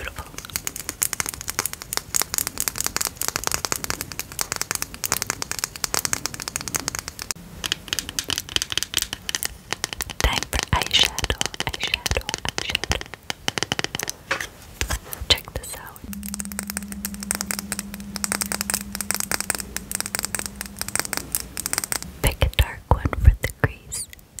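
Long fingernails tapping and scratching rapidly on makeup packaging, first an eyeliner pencil and then an eyeshadow palette box, in a near-continuous run of quick clicks. A low steady hum runs for several seconds past the middle.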